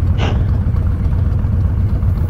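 Honda Fury's 1312 cc V-twin, fitted with a Freedom Performance exhaust, idling steadily at a stop, with a Harley-Davidson V-twin idling beside it.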